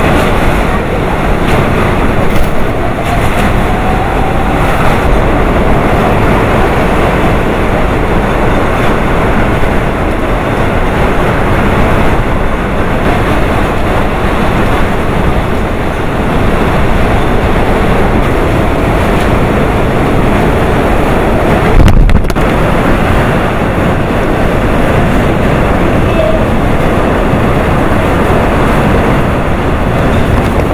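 Typhoon-force wind and driving rain blowing steadily and loudly, buffeting the microphone. A sharp, louder buffet hits about three-quarters of the way through.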